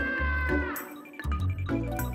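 A long, held scream that drops in pitch and breaks off under a second in, over background music with a steady beat.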